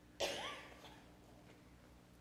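A person coughing once, a short cough about a quarter of a second in that dies away within about half a second.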